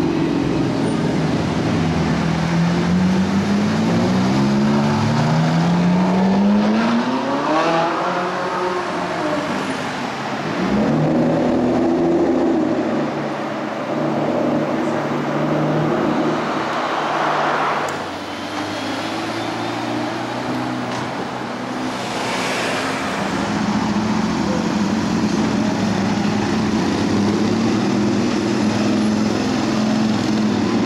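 Car engines on a city street: one accelerates hard through the gears early on, its pitch rising in two sweeps, then engines run steadily in passing traffic, with brief whooshes of cars going by.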